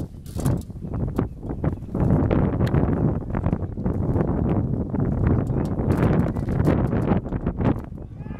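Racehorses galloping on a dirt track: a rapid clatter of hoofbeats mixed with wind noise on the microphone, growing louder about two seconds in as the horses come closer.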